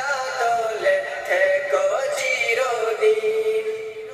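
A solo voice singing a song in Bengali, holding long notes that slide from one pitch to the next.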